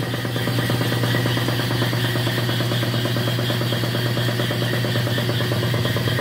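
Rebuilt Borg Warner Velvet Drive 71C-series marine transmission spinning on a test stand. It gives a steady, even drone with a strong low hum and a fast fine gear whir.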